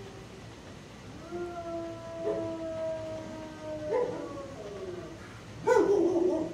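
Dog howling in a shelter kennel: one long, slightly falling howl starting about a second in, with a few short barks over it and a louder bark near the end.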